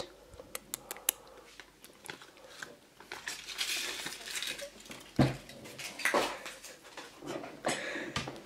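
Hands handling a small plastic toy and its paper leaflet on a table: a few light plastic clicks near the start, a stretch of paper crinkling, then a knock about five seconds in and softer knocks as pieces are set down.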